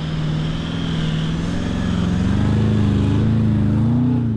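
Four-wheel-drive vehicle's engine running under load, its pitch climbing gradually in the second half, with a rushing noise behind it.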